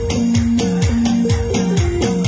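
Gamo dance music with a fast, steady beat: high percussion strokes about four times a second, a low drum hit that falls in pitch about twice a second, and held melodic notes over them.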